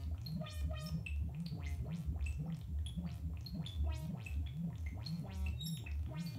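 Modular synthesizer patch playing: a low bass tone that wobbles in pitch about twice a second, under a stream of short bleeps and chirps that jump to random pitches from a sample-and-hold stepping a second oscillator, giving a gurgling, robot-like burble.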